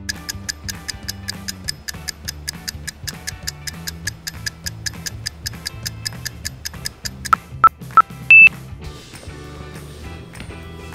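Countdown timer sound effect over background music: fast, even ticking at about four ticks a second, ending in three short beeps and a longer, higher-pitched beep.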